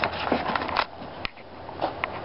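Scuffling and a few sharp knocks as feet move over old mattresses and two wrestlers lock up, over a steady low hum.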